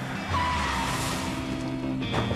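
A car braking hard, its tyres squealing as it skids to a stop, over background music.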